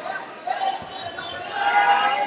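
Voices shouting in a large, echoing sports hall, with one call held near the end, and a single low thud a little under a second in.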